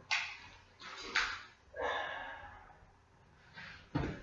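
Faint, scattered knocks and rustles of a person moving about and handling things in a small room, ending in a sharper click.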